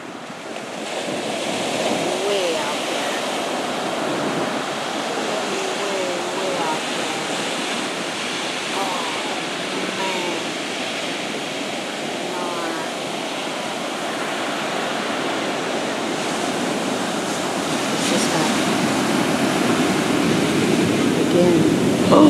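Heavy ocean surf: a set of large waves breaking and rushing up the shore in a continuous wash of white water, growing a little louder near the end.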